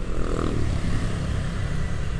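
Wind rumble on an action-camera microphone and a motorcycle running while riding in traffic, a steady, uneven low rumble.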